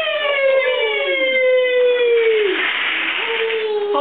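A high, drawn-out vocal call, held for a couple of seconds and falling slowly in pitch, breaking into a breathy hiss, then a shorter held note near the end.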